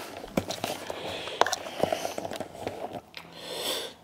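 Handling noise from a handheld camera being moved: scattered sharp clicks and soft rustling, then a breath drawn in near the end.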